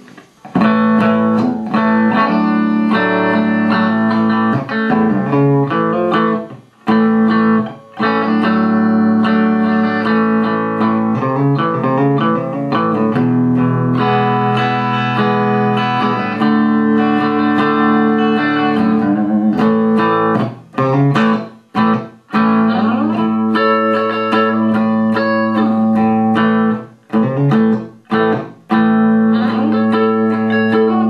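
1999 Parker Nitefly electric guitar played on its bridge humbucker alone through an amp: picked notes and chords ringing out, with a few short breaks in the playing.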